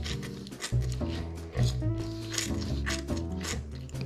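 A person slurping instant noodles off a fork, in repeated short sucking streaks, over background music with held notes and a bass line.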